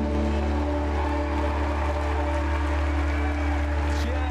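Christian worship music from a live band, holding steady sustained chords with no singing.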